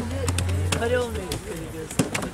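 Voices of several people talking over each other, with a few short slaps of hands beating lumps of wet clay and soil on a table. A low hum runs underneath and stops a little past a second in.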